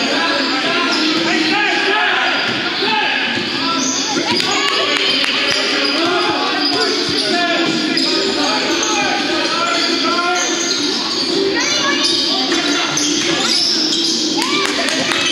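Basketball dribbled on a hardwood court in a large, echoing gym, with many voices of players and spectators talking over each other throughout.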